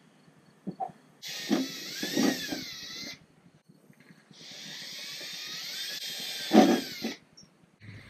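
Cordless drill boring a small pilot hole through the van's steel floor, run slowly in two bursts of about two and three seconds, a whine whose pitch wavers as the bit bites. A short, louder low sound comes near the end of the second burst.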